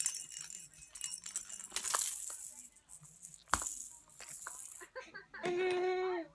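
A baby's plastic rattle ball being shaken, rattling in spells, with one sharp knock a little past the middle. Near the end the baby gives a drawn-out vocal sound.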